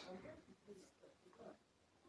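Near silence: a pause in a man's speech, with only a few faint, short murmurs in the background in the first second and a half.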